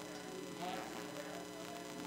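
Steady electrical mains hum, several fixed tones sounding together, with faint indistinct voice sounds beneath it.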